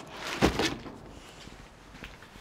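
Flattened cardboard boxes being lifted and shifted by hand, with one louder scrape-and-knock about half a second in, then quieter rustling.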